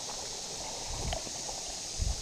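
Steady hiss of outdoor background noise with faint footsteps on grass and gravel, a couple of soft ticks about a second in.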